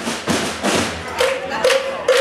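Marching snare and bass drums of a fanfare corps beating out a rhythm, about two strokes a second, with a short held note sounded three times near the end.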